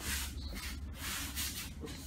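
Rustling of cotton gis and bare feet shuffling on the training mats, in short soft patches, over a low steady room hum.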